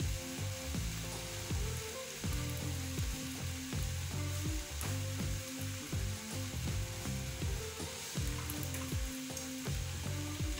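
Beef strips with onion and peppers frying in a pan, a steady sizzling hiss.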